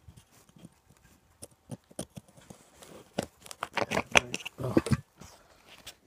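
Small dug-up hinged metal tin being worked and pried open by hand: a run of irregular clicks and scrapes of metal, sparse at first and densest and loudest about three to five seconds in.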